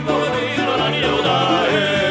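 Live song: a male voice singing a wavering melody over button accordion and a plucked long-necked string instrument, with held bass notes underneath.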